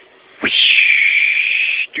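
A high-pitched vocal screech, voiced as a sound effect for a toy-figure fight. It starts suddenly about half a second in, dips slightly in pitch, then holds shrill and steady for about a second and a half before cutting off sharply.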